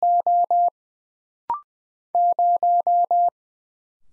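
Computer-generated Morse code tone sent at 20 words per minute. It finishes the digit "1" (one dit and four dahs), gives a short rising two-note courtesy beep about a second and a half in, then sends "0" as five even dahs starting just after two seconds.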